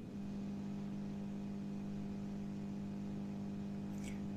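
Steady electrical hum, a low, even buzz with several overtones, as from mains interference in the call's audio line.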